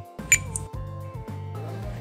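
A cash-register ding sound effect about a third of a second in, a single short bright ring, over background music with steady held notes.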